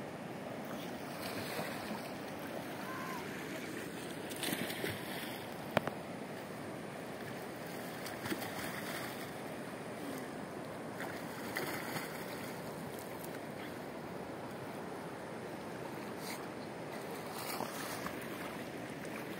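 Steady rush of river water, with a few brief splashes from a person swimming and one sharp click about six seconds in.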